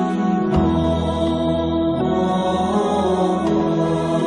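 Slow closing music of long, sustained held notes, with a low drone coming in about half a second in.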